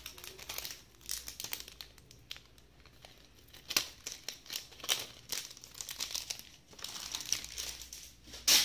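Wrapping crinkling and rustling as it is handled, in irregular bursts with many sharp clicks.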